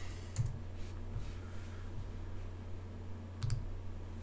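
Scattered sharp clicks of someone working a computer, several in all with a quick double click near the end, over a steady low hum.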